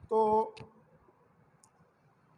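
A man says one short word, then a single sharp click is heard, followed by faint room tone.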